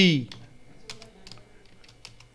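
Typing on a computer keyboard: a run of separate key clicks as code is entered, with the tail of a spoken word right at the start.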